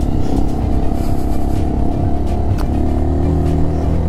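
Italika DM250X dirt bike engine running at low, steady off-road pace, its note shifting about two-thirds of the way through.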